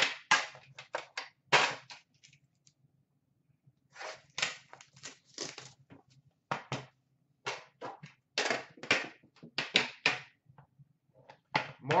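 Metal trading-card tin and its lid being opened and handled: a quick run of sharp clicks, taps and clunks. After about two seconds the sounds stop for two seconds, then resume in clusters.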